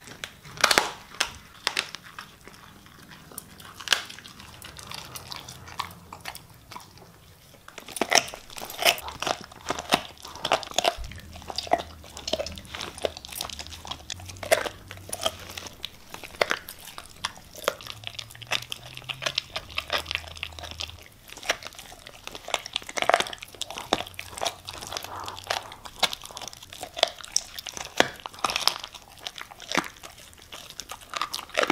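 Siberian husky chewing raw food with bone, a run of sharp, irregular crunches and bites that come thicker after the first several seconds.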